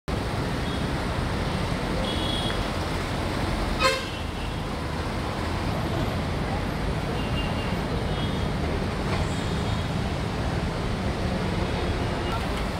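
Steady street traffic noise, with a short vehicle horn toot about four seconds in and a few faint, brief higher tones.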